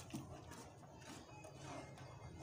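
Faint scraping and stirring of a spoon through a thick semolina-and-milk mixture in a pan as beaten eggs are poured in, with a soft knock just after the start.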